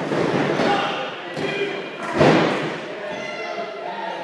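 Wrestler's body hitting the ring canvas with one loud, echoing thud about two seconds in, over the voices and shouts of a small crowd in a big hall.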